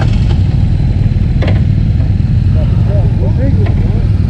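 Motorcycle engine idling steadily close by.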